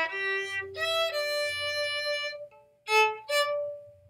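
Violin bowed, playing a song-ending tag figure: a long held note joined by a second note sounding with it, fading out about halfway, then a short strong note and a final held note near the end.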